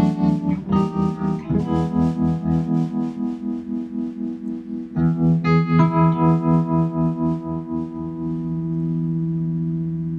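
Electric guitar chords played through a Tone King Sky King tube amp (two 6L6s) with its tremolo on, the sustained chords pulsing in volume at an even rate of several beats a second. A fresh chord is struck about halfway through, and near the end the pulsing stops and the chord rings on steadily.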